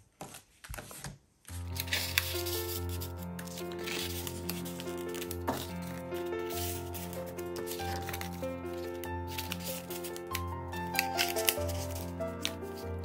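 Instrumental background music with a steady bass line, starting about a second and a half in. Throughout, there are light clicks and rustles of paper cards being handled and slid into paper envelope pockets.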